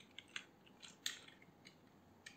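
Faint clicks of computer keyboard keys as a word is typed: about half a dozen irregular keystrokes.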